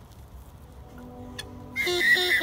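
Background music with held notes coming in about a second in. Near the end a loud, high, squawking cry with sliding pitch breaks in.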